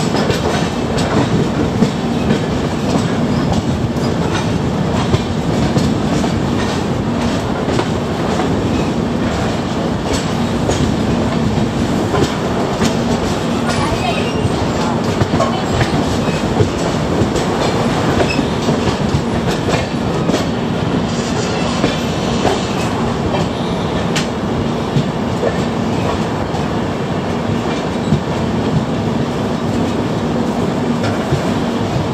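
Express passenger train running, heard from on board one of its coaches: a steady rumble of wheels on the rails, broken by irregular sharp clicks of the wheels over rail joints. A faint steady hum sits underneath.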